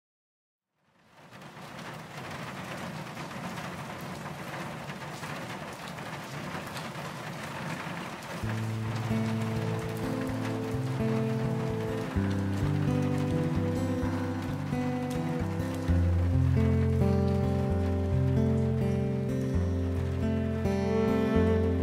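Steady heavy rainfall fades in about a second in. About eight seconds in, music with low held notes enters over the rain and grows louder in steps.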